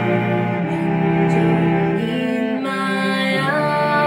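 Four cellos, layered tracks of one player, bowing slow sustained chords of a jazz ballad. The chord changes about halfway through and again near the end, where a wavering line with vibrato comes in above.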